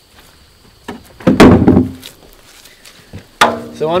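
A wooden board lid being handled and set down on its frame: a light knock about a second in, then one loud, heavy wooden clunk, and a small tap near the end.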